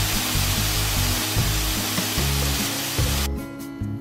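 Steady rush of water from a low-running waterfall spilling over rock, over background music with low sustained notes; the water sound cuts off suddenly about three seconds in, leaving the music.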